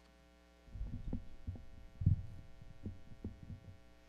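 Irregular low, muffled thumps and knocks picked up by a lectern microphone as notes are handled on the lectern, starting under a second in, with the loudest bump about two seconds in.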